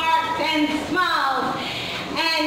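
A woman's voice with drawn-out notes that glide up and down, half-sung rather than plainly spoken.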